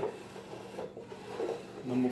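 Faint rubbing and handling noise, a hand moving on the wooden shelf boards of the bookshelf.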